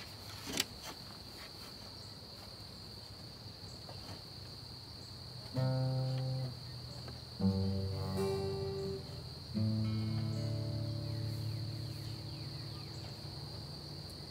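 Acoustic guitar chords strummed and left to ring, three of them entering about five and a half, seven and a half and nine and a half seconds in, each fading slowly. Under them runs a steady high chirring of insects.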